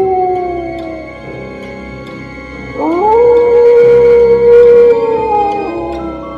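A wolf howl sound effect over eerie background music. One howl fades out in the first second, then a second howl rises sharply about three seconds in, holds level, and falls away shortly before the end.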